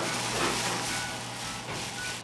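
Plastic bags rustling and crinkling as gloved hands rummage through them.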